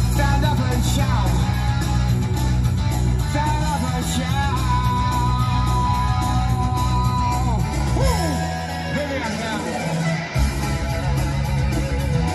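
Heavy metal band track with an electric lead guitar playing long held, bent notes and falling slides over bass and drums. The low end thins out for about two seconds after the middle, then comes back in.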